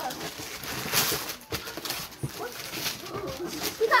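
Rustling and light bumps from a cardboard toy box being handled and passed between hands, with soft children's voices murmuring in the second half.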